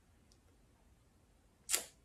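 Near silence in a pause of speech, with a faint click about a third of a second in and a short breath drawn in by the speaker near the end, just before she speaks again.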